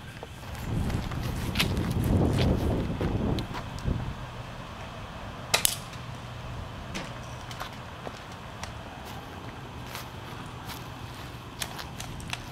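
Toy BB-gun Uzi firing single shots at intervals: a handful of sharp snaps spread out, the loudest about five and a half seconds in. A low rumble fills the first few seconds.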